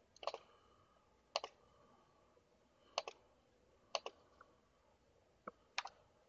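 Faint computer mouse button clicks: about six sharp clicks spread over a few seconds, several in quick pairs, from right-clicking and choosing items in context menus.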